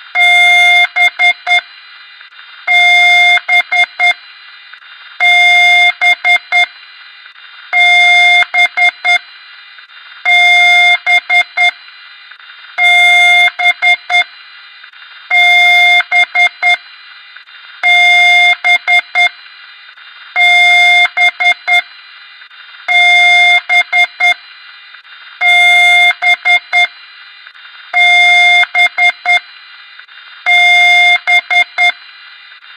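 Loud electronic beeping in a repeating pattern about every two and a half seconds: one long beep followed by a quick run of about four short beeps, over a steady hiss.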